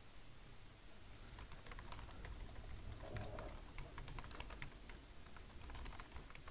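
Computer keyboard being typed on, a run of faint key clicks starting about a second in: a username and password being entered.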